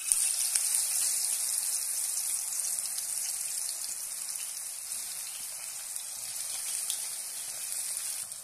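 Banana slices deep-frying in hot oil in a kadhai, a dense sizzle that starts suddenly as they are dropped in. It is loudest at first and eases slightly after a few seconds.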